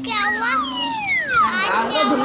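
Cartoon soundtrack of high-pitched voices and sound effects, with one long pitch glide falling from high to low over about a second near the middle.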